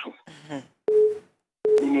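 Two short telephone-line beeps at one steady pitch, about three-quarters of a second apart, like a busy or call-progress tone heard through a phone line, between snatches of speech.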